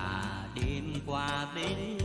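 Music: a male voice singing a Vietnamese song over band accompaniment.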